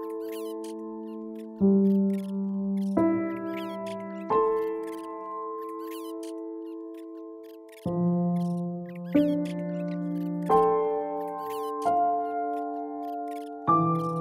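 Slow, calm piano music: chords struck about every second and a half, each fading out before the next, with faint high chirps over them.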